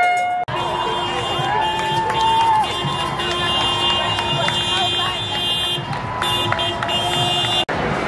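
Busy city street with a crowd's voices over steady traffic and crowd noise, and a long steady tone held for several seconds. The sound changes abruptly about half a second in and again just before the end.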